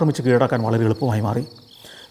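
Crickets chirping in a steady, high, finely pulsing trill. It is heard plainly once a man's speech stops about a second and a half in.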